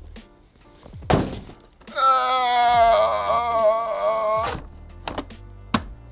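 A knock about a second in, then a held musical note with a slightly wavering pitch, like a sung 'ahh', lasting about two and a half seconds, followed by a couple of short knocks.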